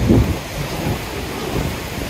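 Low, rumbling wind noise on the microphone over the rush of river water and falls. It is louder for a moment at the start, then steadier.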